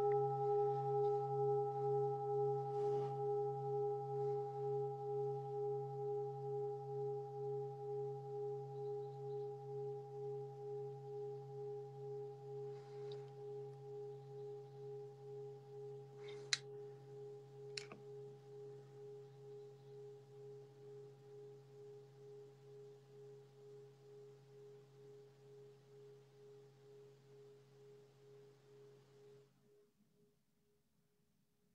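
A struck meditation bell rings out in one long tone that fades slowly and pulses about twice a second. It opens a one-minute silent meditation. Two faint clicks come a little past halfway, and the ring cuts off suddenly near the end.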